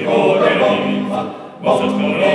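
Sardinian male folk choir singing a cappella in multi-part harmony. A phrase fades about a second and a half in, and after a brief breath the next phrase enters near the end.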